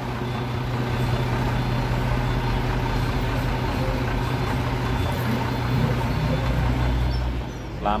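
Mitsubishi Fuso FM215 truck's 6D14 inline-six diesel engine idling with a steady low hum, easing off a little near the end.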